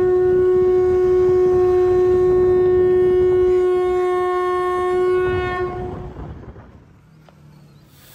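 A single long horn-like tone held at one unchanging pitch for about six seconds, with a low rumble beneath it. It fades out near the end.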